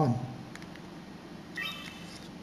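Canon PowerShot S100 compact camera's start-up beep: one short electronic tone about one and a half seconds in, as the camera switches on.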